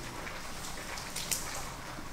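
Quiet, steady background hiss with a few faint, brief crackles.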